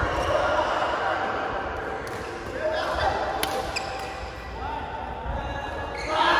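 Badminton play on several courts in a large hall: rackets striking shuttlecocks and shoes squeaking on the court floor, with players' voices mixed in. There is one sharp crack a little past the middle.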